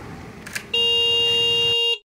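Scooter's electric horn giving one steady, high beep about a second long, cutting off sharply; a short click comes just before it.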